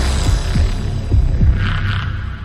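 Dark intro sound design: a low droning bass with several deep throbbing pulses, and a short whoosh near the end.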